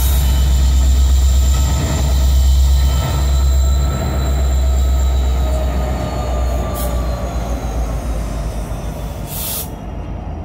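Several diesel-electric locomotives rolling slowly past at close range, their engines giving a deep steady rumble that fades after about six seconds as they go by. Thin high wheel squeal rings over it, and there are two brief noisy bursts near the end.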